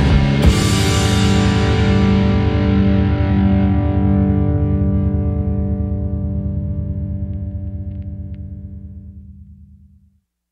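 Rock music with distorted electric guitar; a final chord is struck about half a second in and left to ring, fading away to nothing near the end.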